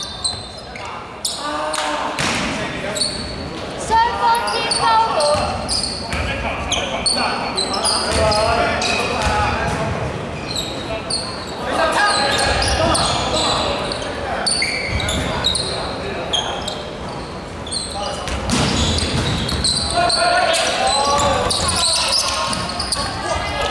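Basketball game sounds in a large echoing gym: a ball bouncing on the hardwood court, sneakers squeaking in short chirps, and players calling out to each other.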